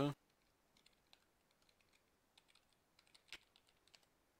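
Faint computer keyboard typing: a scatter of soft key clicks, one louder than the rest about three seconds in, as a password is typed in.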